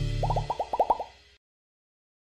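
Intro logo sound effect: a quick run of about seven short rising 'bloop' blips, over by about a second in, as the tail of a low music note fades out.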